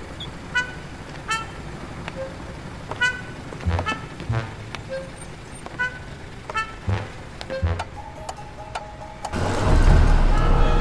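Animated cartoon soundtrack: sparse, short pitched notes every half second to second and a half, some with a low thud under them. A little before the end a loud rushing vehicle noise swells in as a truck drives by.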